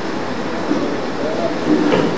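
Steady rushing background noise, with a man's voice speaking softly through it near the middle.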